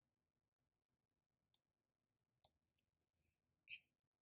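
Near silence with four faint, short clicks spread over the last few seconds.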